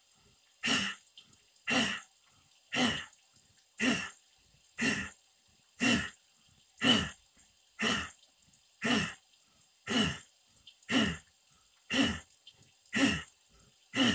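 A man's forceful exhalations in bhastrika (bellows breath): a short, sharp huff with a little voice in it, about once a second in a steady even rhythm, some fourteen of them.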